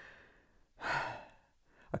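A woman sighs once, a breathy exhale about half a second long near the middle.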